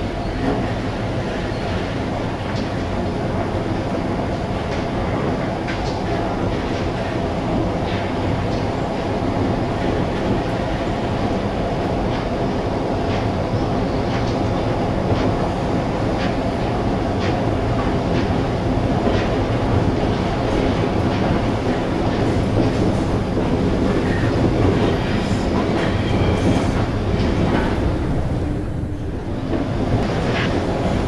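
Steady running noise of a train or metro car heard from inside the carriage, with scattered clacks of the wheels over the rails.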